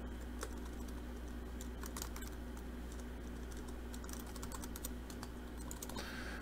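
Computer keyboard keystrokes, faint scattered clicks as terminal commands are typed, over a steady low hum.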